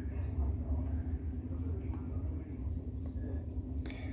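Low, uneven rumble of wind buffeting the microphone during typhoon weather, with a faint steady hum beneath it.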